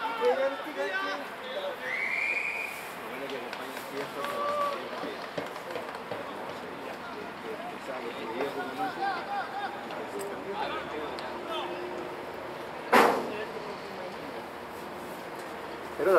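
Indistinct chatter of people at a rugby ground, heard from a distance. About two seconds in there is a short high note that rises and falls, and near thirteen seconds a single sharp knock stands out as the loudest sound.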